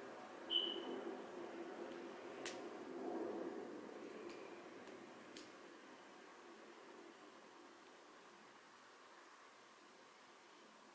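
Faint rustling of hands pushing thick natural hair up into a puff. There is a brief high squeak about half a second in and a few light clicks, then it fades to quiet room tone.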